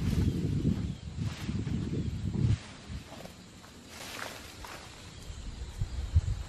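Outdoor rustling with a heavy low rumble on the microphone for about two and a half seconds, then quieter, with a few faint rustles, while a man does pull-ups hanging from a tree branch.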